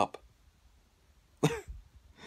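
A man makes one short throaty vocal burst, cough-like, about a second and a half in. It follows the end of a spoken word and a near-quiet pause.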